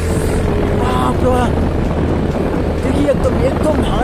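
People's voices over a steady low hum.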